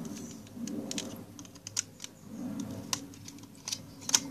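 Small screwdriver working the screws and battery compartment of a plastic toy: irregular light clicks and scrapes of metal on plastic.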